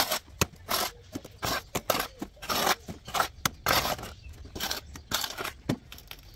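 Steel mason's trowel scraping off excess wet mortar along a straightedge on a fresh screed strip of render: a quick series of short, irregular scrapes.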